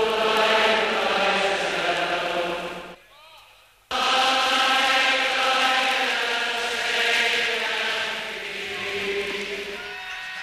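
Football crowd chanting in unison on long held notes, used as a sample in a dub track. The chant drops out about three seconds in and cuts back in suddenly a second later.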